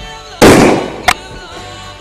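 A plastic soda bottle, pumped up with air by an old freezer compressor through a car-tyre valve, bursts under the pressure: a loud bang a little under half a second in, its rush dying away over about half a second, followed about a second in by a second short, sharp crack.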